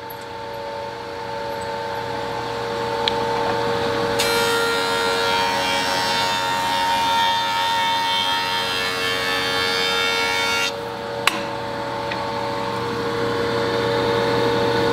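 Delta 8-inch jointer with a Byrd segmented (helical) cutterhead running with a steady hum, then cutting a quilted maple board on a fairly heavy pass. The cutting hiss starts about four seconds in, lasts about six seconds and cuts off abruptly, leaving the machine running on, with a sharp click a moment later.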